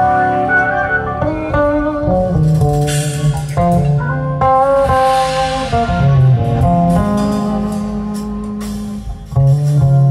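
Electric bass guitar played solo, slow and chordal, with sustained chords and melody notes ringing over one another. The sound dips briefly near the end, then a strong low note comes in.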